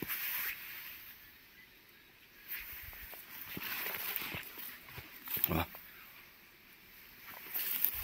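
Footsteps and rustling through grass and dry undergrowth, in uneven bursts, with one short voiced sound about five and a half seconds in.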